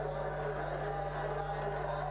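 A steady electrical hum with a buzz of evenly pitched overtones, unchanging throughout, underlying the broadcast recording.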